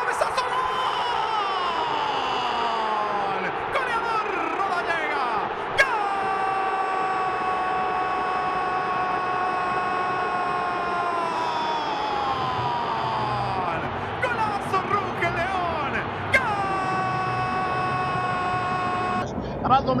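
A Spanish-language football radio commentator's drawn-out goal cry, "goool": two long shouts held at one pitch for several seconds each, starting sharply about six and sixteen seconds in, with falling slides of the voice between them.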